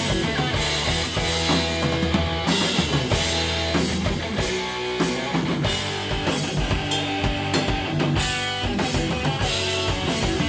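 Heavy metal band playing live: electric guitar riffing over a full drum kit, with repeated cymbal crashes and bass drum.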